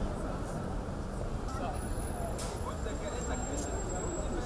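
Busy street ambience: a steady murmur of passers-by talking over the rumble of traffic.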